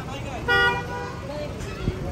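A vehicle horn honks once, briefly, about half a second in, over a steady hum of street traffic.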